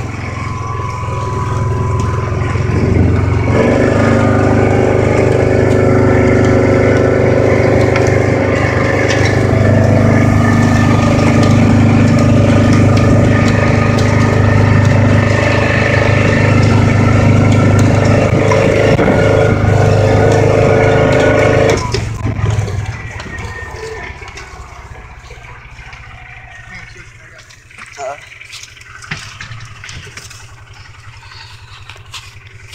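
Engine of a four-wheel-drive utility vehicle running steadily while driving over rough pasture and woodland ground. It gets louder a few seconds in, holds an even pitch, then drops off sharply about three-quarters of the way through.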